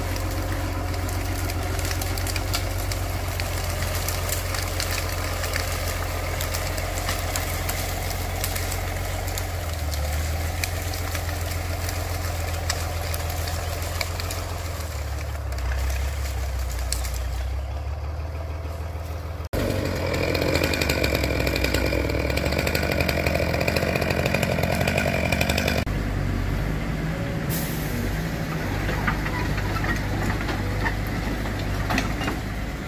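Diesel machinery running steadily: a forestry tractor's engine drones at a low, even pitch. After a sudden cut about 20 s in, a louder machine runs with a steady high whine, and the sound changes again a few seconds before the end, where a mini excavator is working a log grapple.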